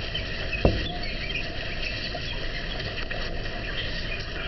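Steady room background noise with many faint short high ticks and chirps, and a single dull thump about half a second in.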